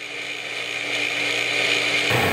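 Steady whirring machine noise with a constant hum, slowly growing louder.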